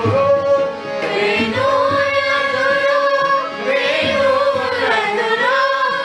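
Hindustani classical vocal music: a voice holding long notes and gliding slowly between pitches, with instrumental accompaniment.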